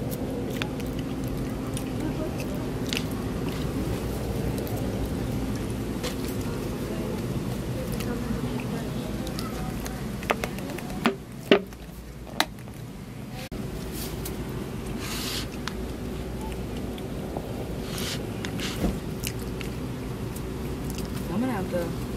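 Clear plastic salad container lid being handled and snapped open: a few sharp plastic clicks about halfway through, over a steady low background hum.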